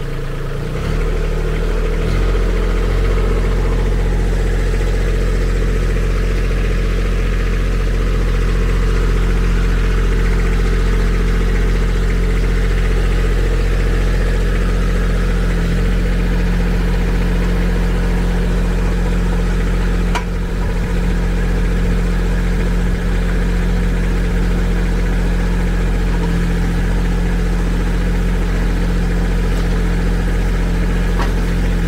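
Kubota B2601 compact tractor's diesel engine running as it powers the backhoe. The engine speeds up over the first couple of seconds, then holds a steady note.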